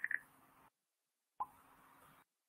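A single short pop, dropping quickly in pitch, about a second and a half in, after a moment of dead silence; a faint tone fades out at the very start.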